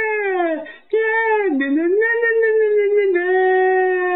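A high voice singing long, drawn-out notes with no clear words. The notes slide up and down in pitch, with a brief break about a second in and a steady held note near the end.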